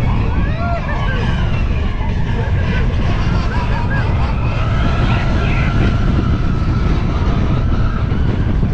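Steel roller coaster train running along its track at speed, with a heavy rush of wind on the microphone and a low rumble throughout. Riders' voices shout in short rising and falling calls over it.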